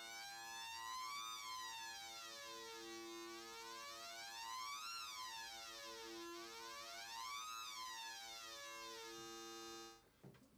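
Hard-synced sawtooth wave from a conventional analogue synthesizer oscillator: the pitch holds steady while the synced oscillator's frequency is swept up and down about three times, a flanging kind of sound with little of the harsh sync edge. It cuts off just before the end.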